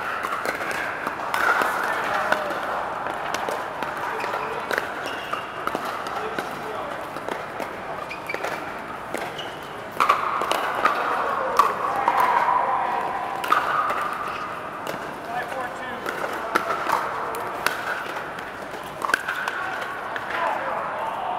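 Pickleball paddles striking plastic balls: sharp, irregular pops from several courts at once, over the voices of players talking.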